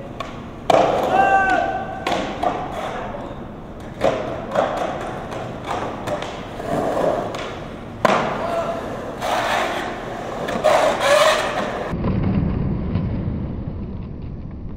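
Skateboard on concrete transitions: the wheels roll with a gritty noise, broken by several sharp board thuds and knocks as it drops in and lands, about a second in and again at intervals. Brief shouts come through between them, and a duller rolling rumble takes over near the end.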